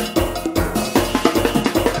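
Soca band playing live: a steady drum-kit beat with percussion under sustained pitched instrumental parts.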